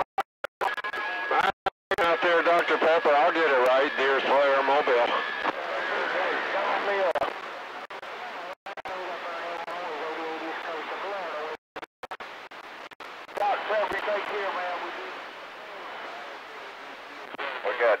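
Voices coming over a CB radio receiver, garbled and warbling too much to make out, cutting out completely for short moments several times. A steady whistle sits under the voices for a few seconds early on.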